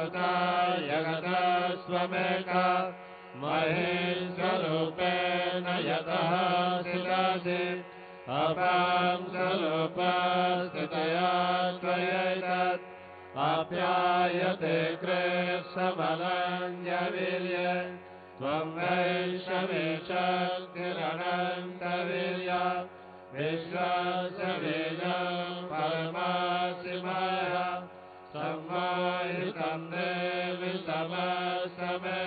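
Sanskrit devotional mantras chanted in a melodic voice, in phrases of about four to five seconds with short pauses between them.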